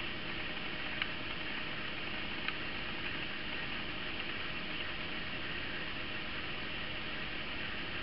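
Steady background hiss of room tone, with two faint ticks in the first few seconds.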